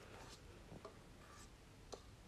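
Near silence, with a few faint, soft scrapes of a spatula against a stainless-steel mixing bowl as cake batter is scraped out into a pan.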